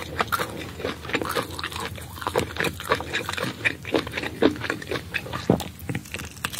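Close-miked eating sounds of steamed sand iguana meat: wet chewing and lip smacks mixed with the soft tearing of the meat pulled apart by hand, in a quick, irregular run of small clicks.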